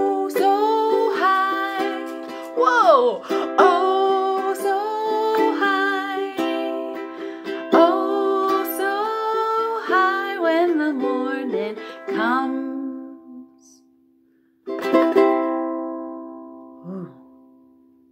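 A woman singing a simple children's song while strumming a ukulele. The song trails off about thirteen seconds in, and after a short pause one last ukulele chord is strummed and left to ring out and fade.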